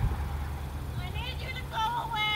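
A steady low rumble with a short knock at the start; from about halfway through, a high-pitched wordless voice that slides up and down.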